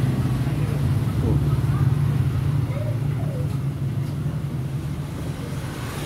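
Steady low engine rumble of nearby road traffic.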